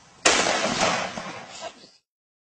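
A single pistol shot about a quarter second in, its loud noise trailing off over about a second and a half before the sound cuts off suddenly.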